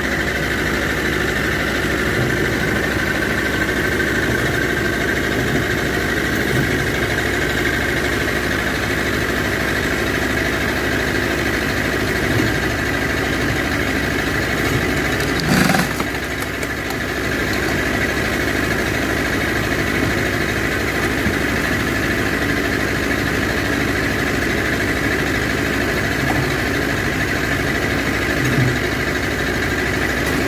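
Fiat 640 tractor's diesel engine running steadily, turning the PTO shaft that drives a Ceccato hydraulic log splitter. One sharp crack about halfway through, as the log splits under the wedge.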